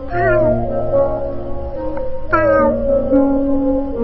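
Two short kitten meows falling in pitch, one just after the start and one a little past halfway, laid over a music track with held notes and a steady low bass.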